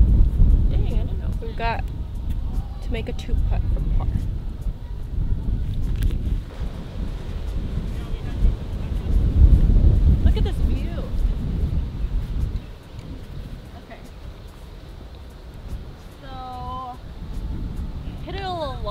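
Wind buffeting the microphone, a loud, uneven low rumble that drops away abruptly about twelve and a half seconds in. Brief faint snatches of voice come through it.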